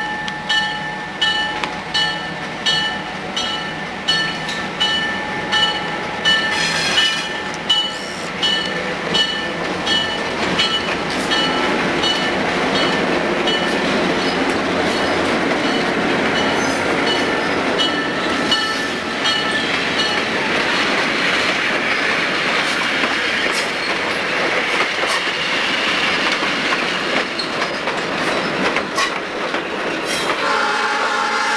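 Katy RS3M diesel locomotive #142 approaching with its bell ringing in regular strokes about every half second or more. From about a third of the way in, the locomotive's engine and wheels grow loud as it passes close by. The bell stops about two-thirds of the way through, leaving the steady rumble of coaches rolling past with some wheel clicks.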